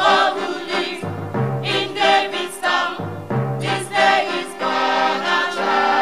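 Mixed choir singing a Christmas carol in harmony, with electronic keyboard accompaniment whose bass note changes about every two seconds.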